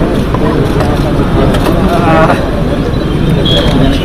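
Speech over a steady low rumble of outdoor background noise.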